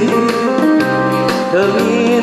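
A singer's voice through a microphone and PA, holding wavering notes with vibrato over an amplified backing track with a steady beat.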